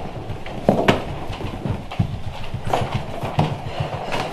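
Irregular knocks and thuds on a wooden floor, a few sharp ones spread unevenly over a low rumble.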